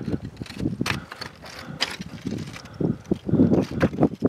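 Irregular light clicks and knocks over a faint background, with a few louder rushes of noise near the end.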